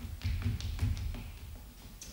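Shoes tapping and scuffing on a wooden floor as people step around: a quick, irregular run of taps with low thuds, busiest in the first second.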